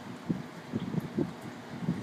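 A tired cocker spaniel panting, quick short breaths about four a second, worn out after rough play.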